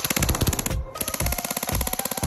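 Airsoft M4 firing full-auto in a rapid, even stream of shots, with a short break about three-quarters of a second in, over background music with a steady beat.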